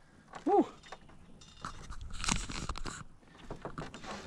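Scraping and clicking handling noises in a small aluminum boat, starting about a second and a half in, with the loudest scrape near the middle.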